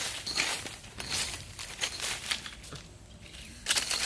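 Hand saw blade scraping and chopping into dry, sandy soil in a series of short strokes, about one or two a second, with a brief lull a little before the end and then a louder stroke.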